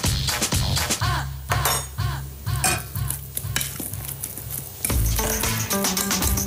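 Metal fork mashing and scraping boiled potatoes and salt cod against a plastic bowl, with short repeated clicks and scrapes as the mash comes together. Background music with a steady bass beat plays under it.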